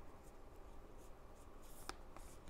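Faint soft sliding and rubbing of oracle cards being shuffled by hand, with one light click near the end.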